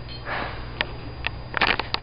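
A dog sniffing at close range: one breathy puff about half a second in, a few sharp clicks, then a quick run of sniffs near the end.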